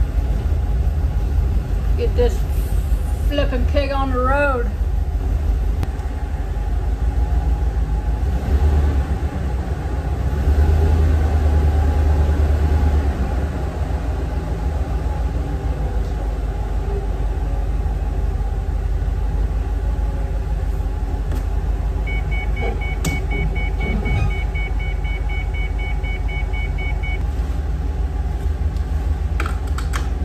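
Ford E350 shuttle bus engine running, heard from the driver's seat as a steady low rumble that grows louder for a few seconds about ten seconds in. A short series of evenly spaced high electronic beeps sounds a little past twenty seconds in.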